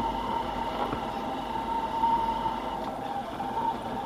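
Motorcycle riding at a steady pace: even engine and road noise with a thin steady tone running through it.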